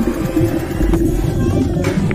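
Muffled underwater water noise from a Doberman swimming in a pool, with sharp splashes near the end as the dog plunges in amid bubbles.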